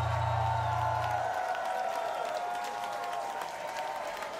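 Concert crowd cheering and applauding, with a low steady drone under it that stops about a second and a half in; the applause fades slightly toward the end.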